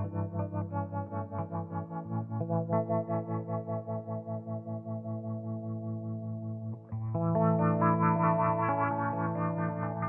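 Electric guitar played through an optical tremolo pedal, its volume pulsing about four times a second. About seven seconds in, as the pedal's knobs are turned, the sound jumps louder and the pulsing becomes quicker and shallower.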